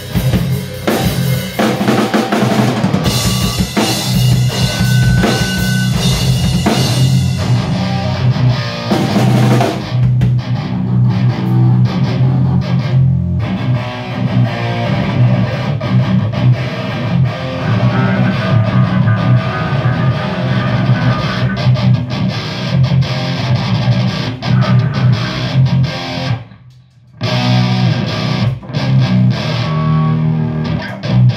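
Full band playing loud rock: electric guitars with a drum kit. The music stops dead for about a second near the end, then comes back in.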